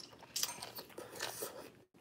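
Close-up chewing of stir-fried water spinach (morning glory) stems: a series of crisp crunches, the loudest about half a second in, as she bites on a piece that is hard.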